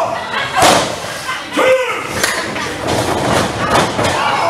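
Wrestlers slamming onto a wrestling ring mat: several heavy thuds of bodies hitting the padded boards, the loudest about half a second in, mixed with shouting voices.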